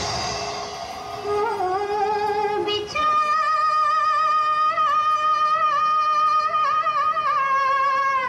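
A recorded Hindi film song with a woman singing: a wavering melody for the first few seconds, then one long high held note from about three seconds in that slides down at the end.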